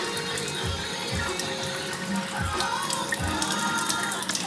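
Water streaming from the spout of a Nexus X-Blue water ionizer into a glass as it dispenses level-four alkaline water, under background music with a steady beat.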